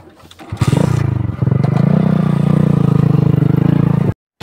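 Small commuter motorcycle carrying two riders revving up and pulling away about half a second in. Its engine note dips briefly about a second and a half in, then runs on steadily under load.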